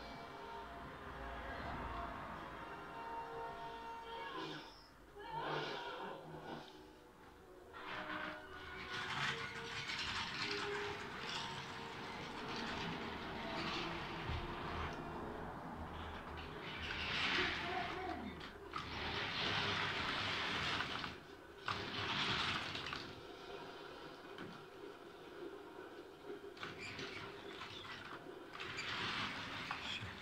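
Small electric motor of an H0-scale model locomotive running as it pulls a train of double-deck coaches, with the wheels rolling and rattling on the model track. The drive wheels are slipping under the load of the coaches.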